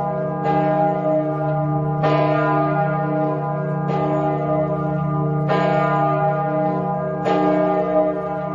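A church bell tolling, struck five times at intervals of just under two seconds. Each stroke rings on under the next, over a steady low hum.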